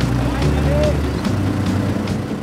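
Background music with a steady beat and a stepping bass line, with a four-wheeler's engine running beneath it.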